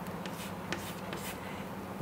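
Chalk writing on a chalkboard: a few faint strokes over a steady low room hum.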